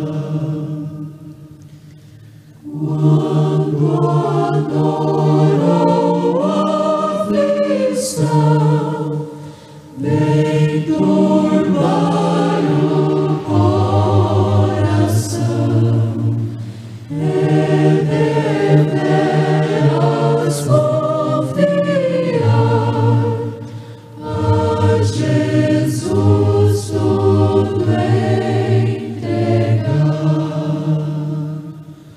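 A choir singing a slow hymn in English in long held phrases, with short breaks between them about two, ten, seventeen and twenty-four seconds in.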